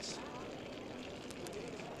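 Steady faint hiss of background room noise, with no distinct sound standing out.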